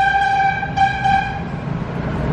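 A single steady, horn-like tone at one pitch, lasting about a second and a half and then cutting off.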